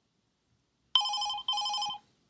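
Incoming video-call ringtone from a web browser's chat app: two short warbling electronic rings, each a quick alternation between two tones, starting about a second in.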